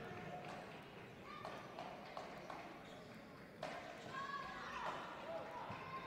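Faint basketball-arena ambience: distant voices and calls from players and crowd over a low hall noise, with one sharp knock a little past halfway.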